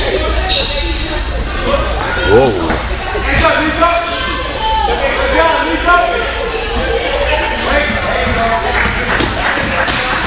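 Youth basketball game in a gym hall: a basketball bouncing and sneakers squeaking on the court, under shouts and chatter from players and spectators that echo in the hall.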